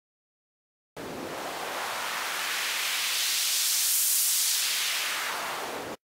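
White-noise synth patch from FL Studio's Sytrus played through its filter, starting about a second in. The cutoff is swept so the hiss loses its low end and turns brighter toward the middle, then fills back in before stopping abruptly.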